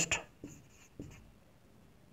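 Marker writing on a whiteboard: a few faint, short pen strokes within the first second or so.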